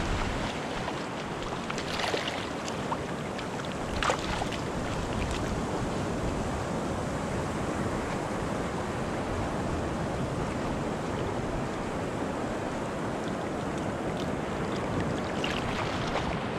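Small waves washing in over a shallow sandy, shelly shore, with wind on the microphone. A brief louder sound comes about two seconds in and again about four seconds in.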